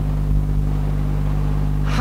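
Steady low hum of lecture-room background noise in a pause between spoken sentences, with no other event standing out.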